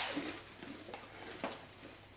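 Faint crunching as puffed corn snacks (vanilla corn puffs) are bitten and chewed: a few soft, sharp crackles over a quiet room.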